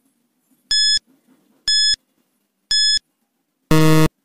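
Quiz countdown timer sound effect: three short, high electronic beeps about a second apart, then a longer, lower buzzer tone near the end as the count reaches zero.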